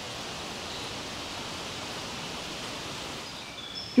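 Steady, even outdoor background hiss with no distinct events.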